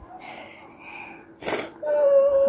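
A person's breathy vocal noises: a soft breathy sound, then a short sharp burst of breath about one and a half seconds in, followed near the end by a steady hummed tone.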